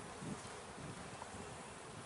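Honey bees buzzing in an open hive, a steady, fairly faint hum.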